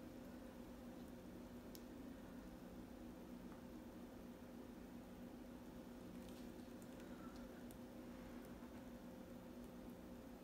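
Near silence: room tone with a steady low hum and a few faint clicks, a cluster of them a little past the middle.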